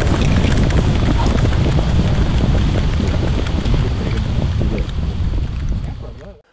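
Wind buffeting the microphone in a loud low rumble, with scattered short taps of footfalls from a group of football players jogging across grass. It fades away near the end.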